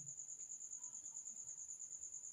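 Faint cricket chirping: a steady, high-pitched pulsing trill.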